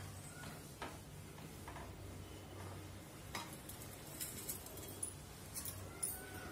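Faint, scattered light clicks and ticks of kitchen utensils being handled at a stovetop pan, over a low steady hum.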